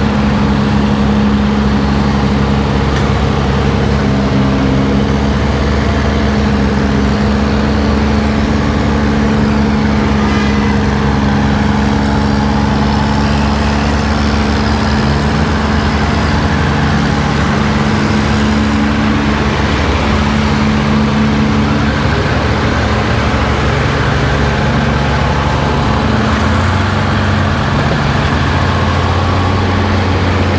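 Large diesel engine of heavy equipment running steadily and loudly close by, its pitch shifting about halfway through and again near the end.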